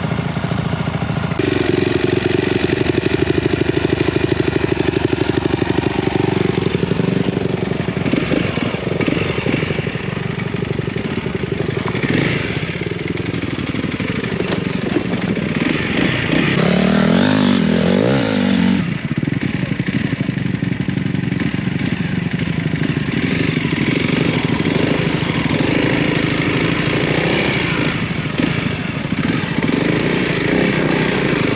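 Honda CRF300L's single-cylinder four-stroke engine running steadily, its pitch wavering up and down about two thirds of the way through as the throttle is worked, then pulling away over gravel near the end.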